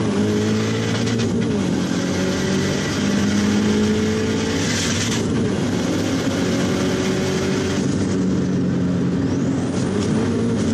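Subaru WRX STi's turbocharged flat-four engine heard from inside the cabin while driving, its note climbing and dropping back several times as it pulls through the gears. A brief high hiss comes about five seconds in, and a high rising turbo whistle near the end.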